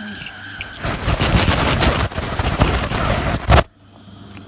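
Ultrasonic dental scaler working on a cat's teeth: a steady high-pitched whine over the hiss of its water spray, cutting off suddenly near the end.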